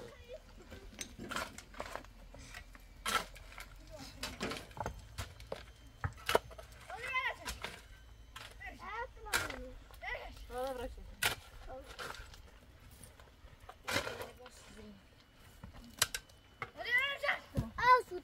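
Hand pick striking stony earth in sharp, irregular knocks every second or two. Children's voices call out a few times in between.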